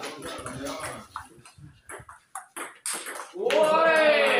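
Table tennis ball clicking off the bats and the table during a rally, with some voices. About three and a half seconds in comes a person's loud, drawn-out shout that falls in pitch.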